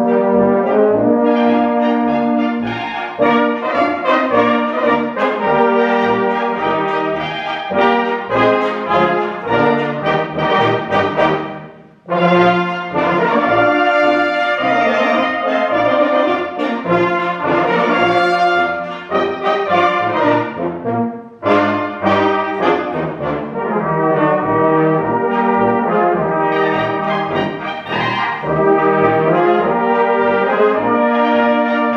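A Danube-Swabian village brass band plays live, with flugelhorns, brass horns and clarinet over a steady pulsing bass. The music breaks off briefly about twelve seconds in, then goes on.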